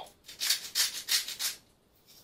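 Salt grinder being twisted over a pot: a quick run of about six short grinding strokes, then it stops.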